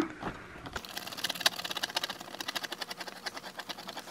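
Fingernail scratching the coating off a paper lottery scratch card in quick repeated strokes, starting about a second in.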